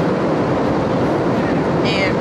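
Jet airliner cabin noise in flight: a steady, loud roar of engines and rushing air, loud enough to drown out speech.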